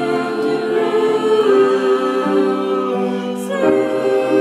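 Three girls' voices singing together in long held notes, shifting to new notes about a third of the way in and again near the end.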